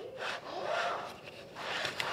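A plant pot scraping across a wooden mantle shelf as it is slid into place: one rough slide lasting about a second and a half.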